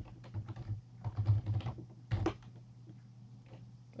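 Typing on a computer keyboard: a quick run of keystrokes that stops a little over two seconds in.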